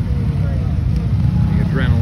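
Off-road side-by-side running along a trail: a loud, rough low rumble from the engine and drivetrain.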